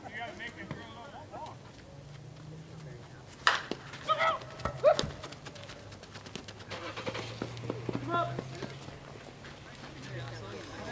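Bat hitting a slowpitch softball about a third of the way in, a single sharp crack, followed by players shouting and a second knock about a second and a half later.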